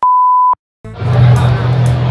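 A single steady electronic beep lasting about half a second, cut off abruptly: an edited-in tone marking a new take. Dead silence follows, then background music comes in about a second in.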